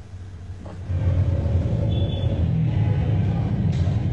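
Steady low rumble of road vehicles' engines in street traffic, coming up about a second in.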